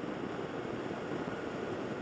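Steady wind rush and engine noise from a motorcycle cruising down a road.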